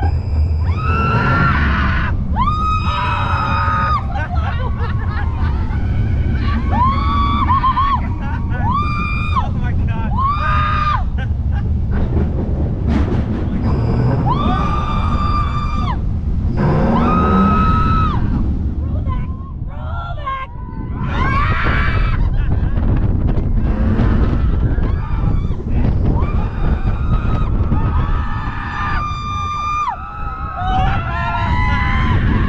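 Roller coaster riders screaming in a run of long, high yells, one after another, over a steady low rush of wind and the rumble of the train on the track.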